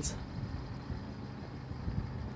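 A steady low hum under faint outdoor background noise.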